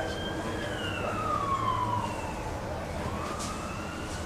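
An emergency vehicle siren wailing, its pitch falling slowly over the first two seconds and rising again from about three seconds in.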